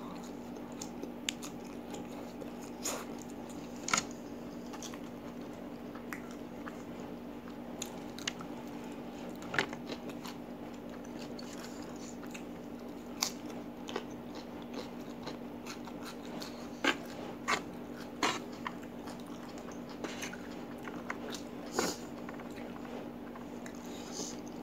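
Close-up eating sounds of a person eating spicy instant noodles: chewing and slurping with a dozen or so short, sharp crunchy bites scattered through, over a steady low hum.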